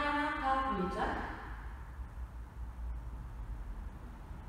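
A woman's voice speaking for about the first second, then room tone with a steady low hum.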